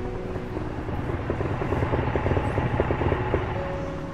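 Motorcycle engine running with a rapid pulsing note that swells, is loudest in the middle, and fades near the end, over a film music score.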